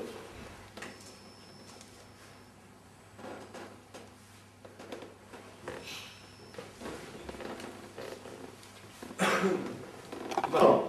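Quiet room tone with faint, scattered small sounds; a voice comes in loudly about nine seconds in.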